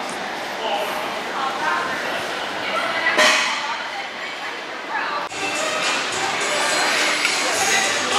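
Gym ambience in a large hall: indistinct voices over background music, with one loud, brief noise about three seconds in.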